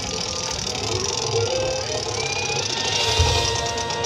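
High school marching band playing its field show: held notes over a bright, dense high wash, with a stronger low hit about three seconds in.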